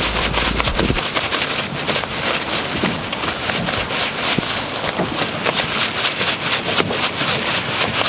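Plastic bag of squid pieces and breadcrumbs being shaken, giving a continuous rapid crinkling and rustling of the plastic as the squid is coated in crumbs.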